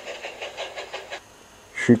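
Steam-locomotive chuffing in a quick, even rhythm, stopping a little over a second in.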